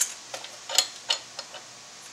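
Light metal clicks and ticks from the adjustment knob of a Victoria/Molino-type hand-cranked grain mill being handled and turned to tighten the grind. A sharper click comes at the very start, then a few lighter, irregular ticks.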